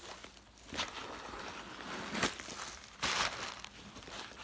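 Tissue paper padding rustling and crinkling in several short bursts as it is handled and pulled out of a handbag, the longest burst about three seconds in.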